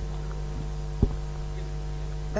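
Steady electrical mains hum from the room's microphone and loudspeaker system, with a single sharp click about halfway through.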